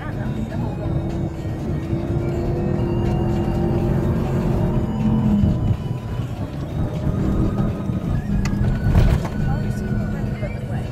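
Inside the cabin of a 4x4 driving over sand dunes: a steady low rumble from the engine and tyres, with music playing in the cabin over it. A sharp knock comes about nine seconds in, as the vehicle jolts.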